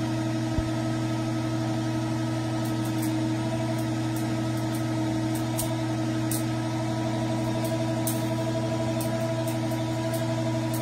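Electric motor rig running with its output shorted, giving a steady hum of several tones whose pitch does not change, with faint high ticks now and then.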